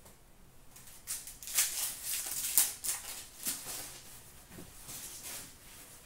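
Trading cards being handled and flicked through by hand: a quick run of swishes and flicks starting about a second in, thinning out after about four seconds.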